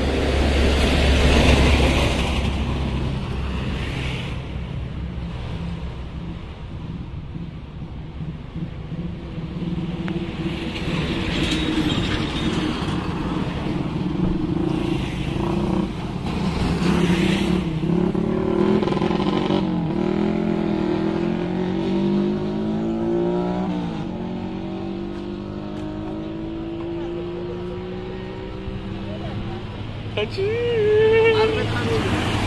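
Road traffic: vehicles passing one after another, with swells of tyre and engine noise as each goes by. In the second half, engine tones fall and then rise as heavier vehicles pass.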